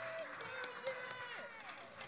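Indistinct voices talking quietly in a room after the music has stopped, with a few light knocks, the clearest just under a second in.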